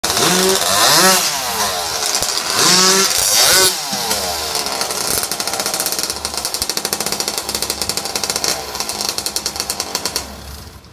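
Racing hot saws (modified high-power chainsaws) running at full throttle through logs. The pitch swings up and down sharply in the first few seconds, then settles into a rapid, steady pulsing that cuts off near the end.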